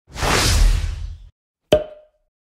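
Swoosh sound effect lasting about a second, followed by a short sharp hit with a brief ringing tone near the end: an animated logo's intro sound.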